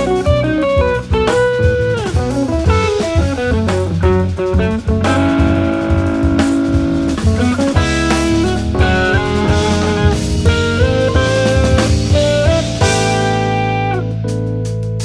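Jazz-rock fusion band playing: electric guitar melody lines over drum kit, electric bass and keyboards.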